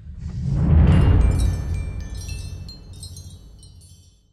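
Closing trailer sound design: a deep boom that swells about a second in and slowly fades, with high chimes tinkling over it, all dying away near the end.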